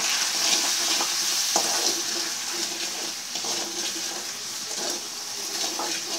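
Sliced onions and ground spices sizzling in hot oil in an aluminium kadai, stirred with a metal spatula that scrapes and taps against the pan. The sizzle is loudest in the first second or so.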